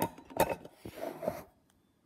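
Handling noise from a phone being moved about: a few sharp knocks, the loudest about half a second in, and rubbing, then quiet.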